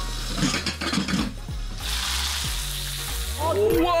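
Garlic cloves and pork belly frying in pork fat in a stainless steel pot, sizzling loudly for about a second and a half in the middle.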